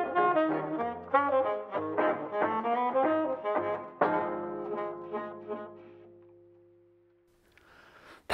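A small jazz band, clarinet among it, plays a 1940s-style number. About four seconds in it lands on a final held chord that dies away to silence about three seconds later.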